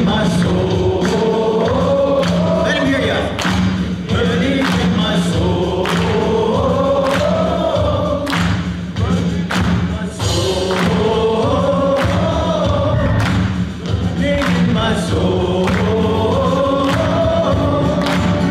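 Live praise and worship band: men singing a slow melody over keyboard, guitars and a drum kit keeping a steady beat.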